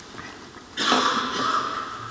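A man breathing out close to the microphone, a single breathy sound that starts under a second in and lasts about a second.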